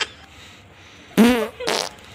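Two short fart sounds, the first and louder a little over a second in, the second just before the end, each with a wavering pitch.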